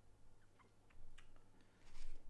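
Quiet room tone with a steady low hum and a few faint, scattered ticks.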